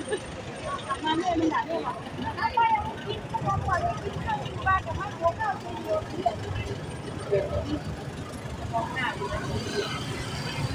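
A car-sized vehicle's engine running low as it moves slowly past at close range, under people's voices.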